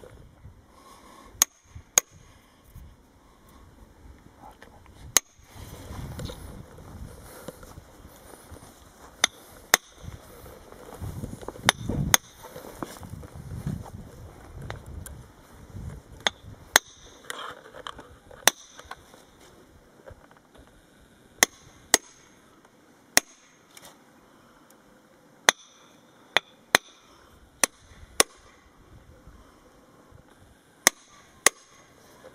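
Hammer striking a steel chisel to cut a notch into a wooden fence post for a stay. The blows are single, sharp and irregular, from under a second to several seconds apart.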